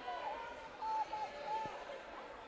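Faint gymnasium background with distant voices of players and spectators calling out in the hall, during a stoppage in play.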